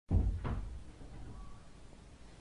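A sudden heavy low thump, followed about half a second later by a sharper knock, both dying away into faint room ambience.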